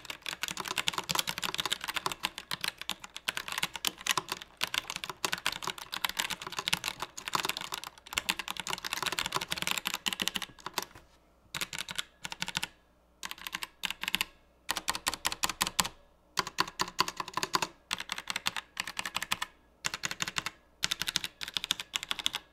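Roccat Vulcan 121 Aimo mechanical keyboard with Titan brown tactile switches being typed on. For about the first ten seconds it is a fast continuous run of keystrokes, then shorter bursts and single presses with pauses between. The key presses are followed by a bit of a ringing sound, an annoying trait of this board.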